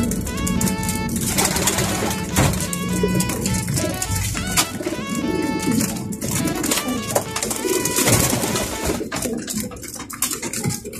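A flock of racing pigeons cooing, with background music playing over them.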